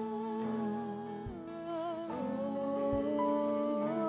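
Slow live worship band music: sustained keyboard and guitar chords under a voice singing long, wordless notes with vibrato, with a soft low beat about every second and a half.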